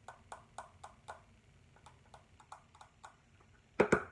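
Light clicks and taps from fingers handling a small round container, quick at first and then sparser, with one louder knock near the end.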